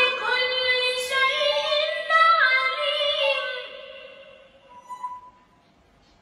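A boy's voice reciting the Quran in the melodic tajweed style, drawing out one long held note with small turns of pitch that fades away about four seconds in, followed by a brief pause for breath.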